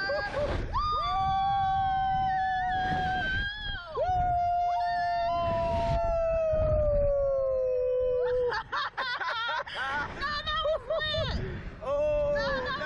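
A rider on a SlingShot catapult ride screaming in two long held cries, the second longer, its pitch sagging slowly before it breaks off. From about two-thirds in, short excited yelps and laughter.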